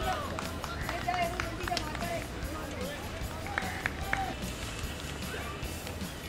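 Cricket players' scattered shouts and calls across an open field, short and spread out, over background music.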